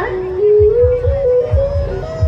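Bassac opera singing: one long held note that climbs in small steps, over a steady beat of drums.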